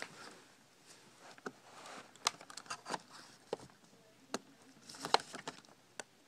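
Light plastic clicks and taps, about a dozen at irregular intervals, as a replacement Dell Inspiron N5010 laptop keyboard is slid and pressed into its place in the case.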